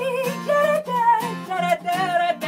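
A woman singing over a strummed acoustic guitar, her voice sliding and wavering in pitch on a line with no clear words.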